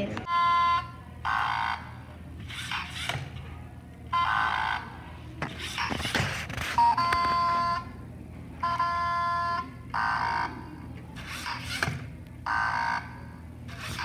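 LEGO Mindstorms EV3 brick's speaker playing its built-in alarm sound effects (error alarm, general alert, horn): a string of short electronic beeps and harsher alert blasts, each about half a second to a second long, repeated several times with gaps. A sharp knock comes about six seconds in.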